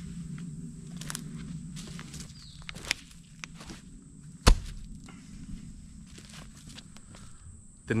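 Footsteps and light rustling on dry leaf litter while a salt block is handled. About halfway through, a single heavy thud as the block is set down onto the bare dirt.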